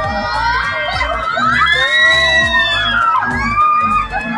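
Many riders screaming together on a swinging amusement-park thrill ride: long, overlapping screams rising and falling, loudest about halfway through, over music with a low beat.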